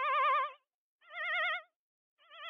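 High held sung notes with a wide, fast vibrato, in short phrases: one note ends about half a second in, a second shorter note follows after a brief gap, and a third starts right at the end.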